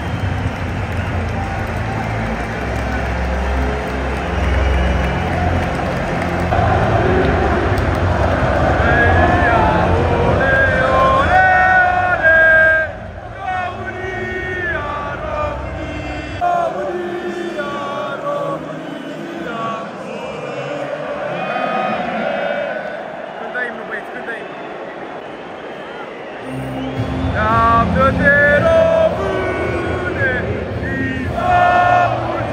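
Large football-stadium crowd singing and chanting over music from the public-address system. The deep low end drops away about halfway through and comes back near the end.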